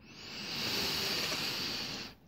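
A man's long, audible breath into a close desk microphone, a steady hiss that swells over the first half-second and holds.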